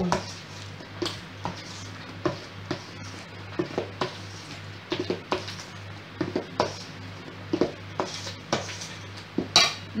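A metal spoon scraping and clinking against a stainless steel mixing bowl as thick cake batter is cut and folded, in irregular strokes.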